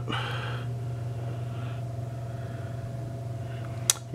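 A steady low hum with a fainter, higher steady tone above it, and a single sharp click just before the end.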